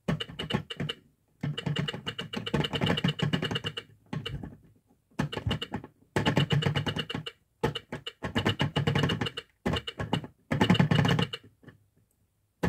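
Geared plastic hands of a Telly teaching clock being turned by hand, the mechanism clicking rapidly in bursts of one to two seconds with short pauses between.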